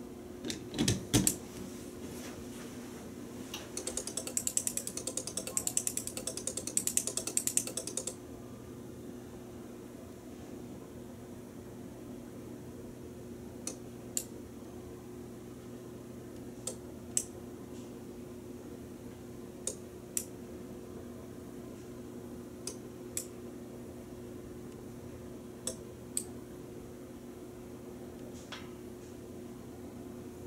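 Clicking of the switching relays in an Arduino-driven sequencer for a vintage Otis elevator floor indicator. A fast run of clicks comes from a few seconds in until about eight seconds, then pairs of sharp clicks about half a second apart repeat roughly every three seconds as the lit floor steps along. A couple of loud knocks come in the first second or so, and a steady low hum runs underneath.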